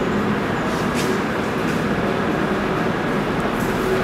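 Steady background noise with a faint low hum, like a fan or machine running in the room, while a marker writes on a whiteboard with a faint short scratch about a second in.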